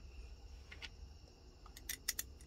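A few faint clicks of a screwdriver and small metal parts as an aftermarket carburetor is put back together, about a second in and again near the end, over a low steady hum.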